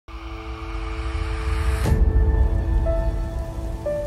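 Logo intro music: held synth notes over a deep rumble, with a whoosh about two seconds in, after which new notes come in.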